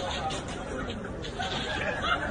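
Indistinct chatter of several people's voices, with no single clear word.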